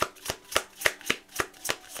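A tarot deck being shuffled by hand, giving a steady run of sharp card slaps at about three or four a second.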